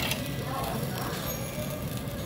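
Chicken galbi sizzling on a wire grill over hot charcoal, a steady low hiss, with a short clink of metal tongs at the start.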